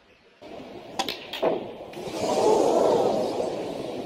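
Snooker cue striking the cue ball about a second in, followed by sharp clicks of balls colliding. Then the crowd noise swells loudly and dies away slowly.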